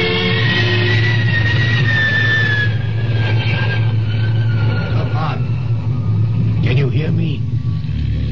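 Radio-drama sound effect: a steady low engine drone, with a high tone gliding slowly downward over it and fading out after about six seconds.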